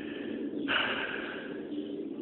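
A breath close to the microphone: a short, hissing exhale or sniff that starts abruptly a little over half a second in and tails off.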